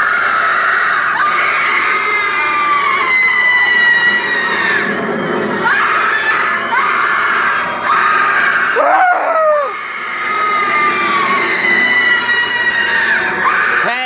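Loud, continuous screaming from a Halloween animatronic prop's sound effect: long high screams that each slide slowly down in pitch, one after another, with a brief lower cry and dip about two-thirds through.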